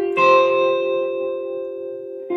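Electric guitar, a Squier Bullet Mustang through an Orange Micro Dark amp, playing an F sus2 triad on the top three strings (frets 10, 8, 8), struck once just after the start and left ringing, slowly fading.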